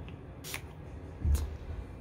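A pump-bottle makeup setting spray spritzed onto an eyeshadow brush: one short hiss about half a second in, then a second, fainter hiss with a dull bump near a second and a half.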